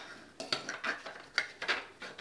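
3D-printed plastic mold parts clicking and knocking as they are handled, set down on a wooden workbench and fitted together: about five light clicks.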